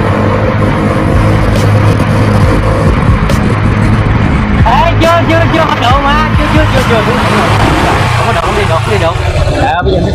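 Motorbike riding along a road: the engine's steady hum under a heavy rush of wind over the microphone. Indistinct voices come through about halfway in.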